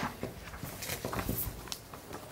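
Papers rustling and being shuffled across a table, with scattered light taps and knocks.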